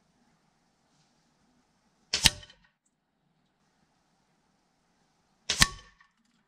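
Two shots from a Hatsan 6.35 mm break-barrel air rifle, heard from the target end: two sharp cracks with a short tail, about three seconds apart, each a pellet striking the paper target.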